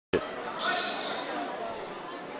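Echoing gymnasium ambience during a basketball game: spectators' chatter and noise from the court, with a short knock right at the start.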